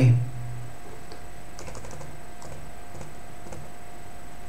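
A few light, irregular clicks of a computer keyboard, over a steady faint electrical hum with a thin whine.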